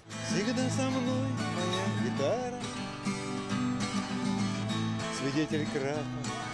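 Twelve-string acoustic guitar strummed in chords, with a voice singing a song over it in two phrases.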